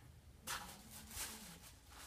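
A brief rustle of handling about half a second in, as an item is picked up, then a quiet room.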